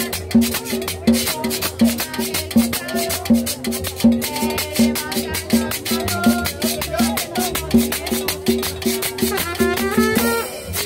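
Upbeat Latin dance music, salsa-like, with a steady repeating bass beat and a shaker rhythm over it, played loud for dancers.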